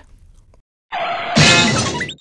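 Cartoon sound effect of something shattering: a loud crash about a second and a half in, with music, after a near-silent first second.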